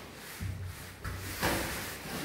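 Soft scuffling and bumping of two wrestlers' bodies moving on a foam floor mat, with a soft knock about a second in.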